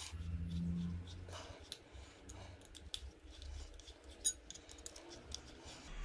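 Faint small metallic clicks and scrapes of a screwdriver turning the pad retaining pins into a Voge 300 Rally's front brake caliper, with one sharper click about four seconds in.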